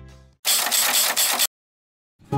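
A short editing sound effect between scenes: background music fades out, then about a second of dense, rapid mechanical clicking, cut off abruptly into silence.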